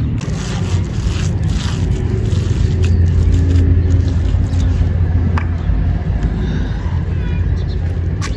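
A large road vehicle's engine running close by, a steady low rumble that swells to its loudest in the middle, with a few soft scrapes of wet cow dung being scooped up by hand.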